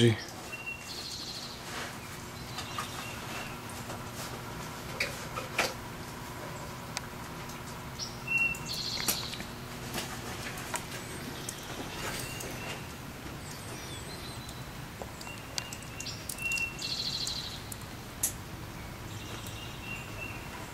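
Small birds chirping and giving short high trills every few seconds, over a steady faint hum, with a few light clicks.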